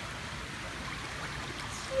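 Steady, fairly quiet water noise in a swimming pool, with water moving gently around a girl floating on her back.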